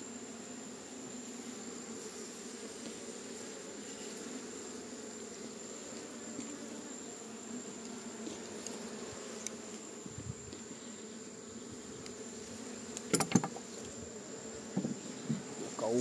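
Honeybee colony buzzing steadily from an open hive full of bees, a docile colony. A few brief sharper sounds break in about 13 seconds in and near the end.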